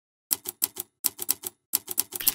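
Typewriter keystroke sound effect: sharp key clicks starting about a third of a second in, coming in three quick runs of about four strikes each with short pauses between, as the letters of a logo type onto the screen.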